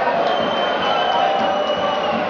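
Football stadium crowd: a steady din of many voices talking and calling in the stands.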